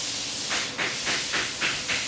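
Steady hiss, with a run of about six short metallic scrapes and clicks starting about half a second in as the AOD governor is worked along the transmission's output shaft.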